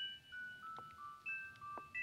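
Music box playing a slow, tinkling melody, one plucked note at a time, about three notes a second, each ringing on into the next.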